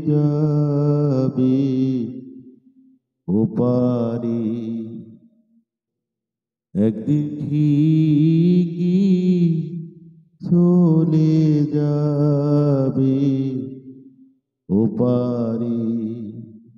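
A man singing a Bengali Islamic gojol solo and unaccompanied, in long drawn-out phrases with wavering, ornamented pitch, each phrase followed by a silent pause of about a second.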